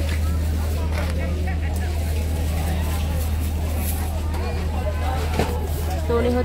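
Busy open-air market ambience: indistinct voices in the background over a steady low rumble.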